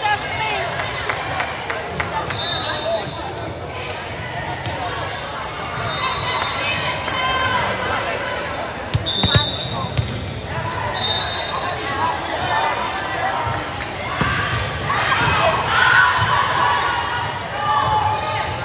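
Volleyball being played on a hardwood gym floor: the ball is struck and hits the floor in sharp knocks, and sneakers squeak in short high chirps every few seconds. Chatter from players and spectators echoes through the large hall.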